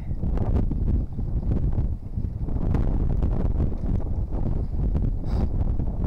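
Wind buffeting the microphone: a steady, low rumble.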